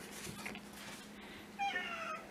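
A short animal call, about a second and a half in, that falls in pitch over about half a second.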